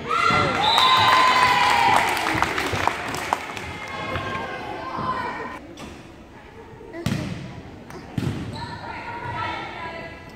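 Volleyball rally in a gym: high-pitched shouts and cheers from girls and spectators in the first two seconds and again near the end, with several sharp thumps of the volleyball in between, the clearest about three, seven and eight seconds in.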